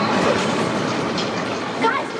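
Film-trailer sound of a train rushing past, played loud over a large hall's speakers: a dense, steady noise that eases a little toward the end. A short shout comes near the end.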